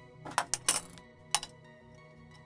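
Several sharp metallic clinks as a steel try square and steel rule are set down against a rectangular steel pipe, over soft background music.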